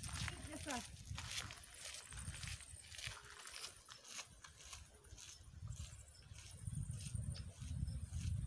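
Footsteps on a gravel dirt road: a run of light crunches and scuffs, several a second, over a low rumble that swells and fades.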